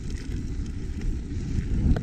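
Mountain bike rolling over a dirt trail: a steady rumble of tyres and frame, mixed with wind buffeting the microphone, and a few light clicks and rattles.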